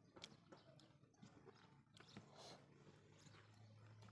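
Very faint eating sounds: a few soft, scattered clicks and smacks from chewing and from fingers working rice on a plate.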